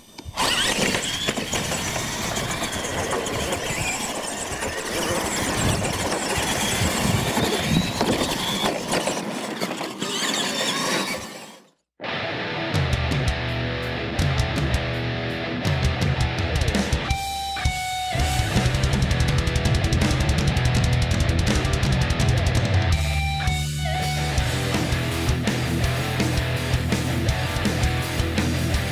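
Radio-controlled monster trucks racing on a dirt track, a steady noisy motor and tyre sound that fades out about eleven seconds in. Loud rock music with electric guitar and a heavy beat then takes over.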